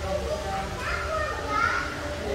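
Background chatter of visitors with children's voices, a high-pitched child's voice calling out about a second in, over a steady low hum.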